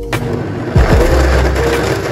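High-powered countertop blender switching on and running at speed, chopping chunks of fruit and leafy greens into a smoothie.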